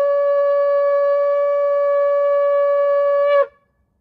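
Shofar blown in one long, steady held note with a bright, reedy tone, ending abruptly about three and a half seconds in.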